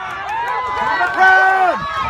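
Football spectators shouting and yelling over one another as a play runs. One close voice holds a long, loud shout from about a second in.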